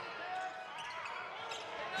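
A basketball being dribbled on a hardwood court, faint under the murmur of distant voices in the arena.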